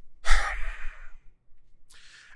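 A man's heavy sigh, a loud breath out lasting about half a second. Near the end comes a small click and a quick breath in.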